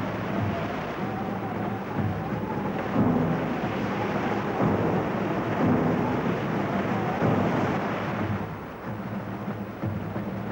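Heavy storm seas crashing against a harbour breakwater, a steady roar of surf swelling with each breaking wave and easing near the end. A wavering wind howl runs over it in the first part.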